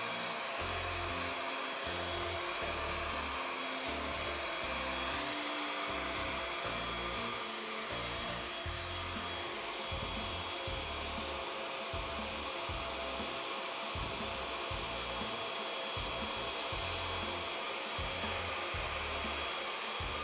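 A handheld cordless vacuum (Dustbuster) running steadily with a constant motor whine, over background music with a bass line.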